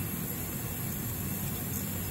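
A film scanner's transport running with a steady, even hum as warped 8mm film feeds through its rollers.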